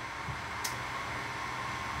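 Steady background hiss, like a fan running, with one faint click about two-thirds of a second in.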